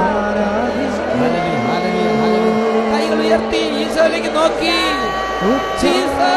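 A congregation praying and praising aloud all at once, many overlapping voices, over long steady held tones of background music.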